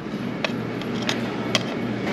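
Restaurant background noise: a steady hum and din with three or four light clinks of tableware.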